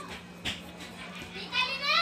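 A child's high-pitched voice calling out near the end, rising and then falling in pitch, with a short knock about half a second in, over a steady low hum.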